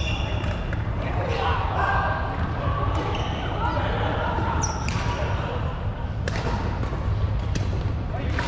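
Badminton rackets striking the shuttlecock in a doubles rally: sharp, short cracks at irregular intervals of about a second, with a few brief high squeaks from shoes on the wooden court.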